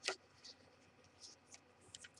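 Quiet handling of a paper practice book: a short click right at the start, then a few faint ticks.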